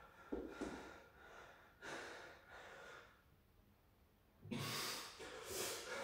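A man breathing hard and strained through a held plank: a few short breaths, a pause of over a second, then louder heavy breaths near the end.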